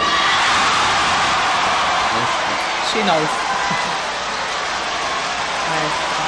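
Concert audience applauding and cheering, a steady wash of clapping that eases a little toward the end. A brief voice slides down in pitch about three seconds in.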